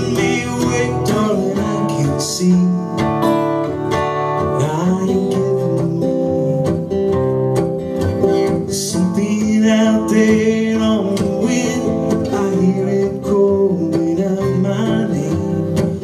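Solo acoustic guitar strummed steadily, playing a country-folk song.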